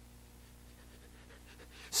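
Quiet room tone in a pause between speech, with a faint steady hum.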